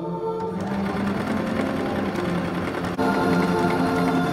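Small domestic electric sewing machine stitching through fabric, a fast steady clatter of the needle mechanism that starts about half a second in, heard over background music.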